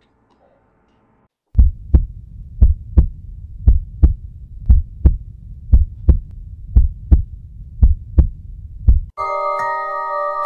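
A heartbeat sound effect: deep double thumps, about one pair a second, eight beats in all, after a short silence. Near the end it cuts off and music with bell-like mallet tones begins.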